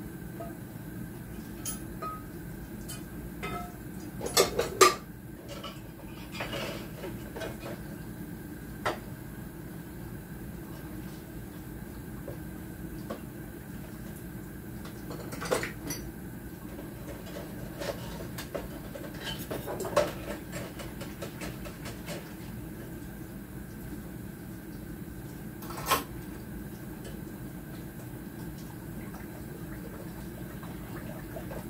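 Dishes and cutlery being washed by hand in a kitchen sink: scattered clinks and clatters, the loudest a quick pair about four to five seconds in, over a steady low hum.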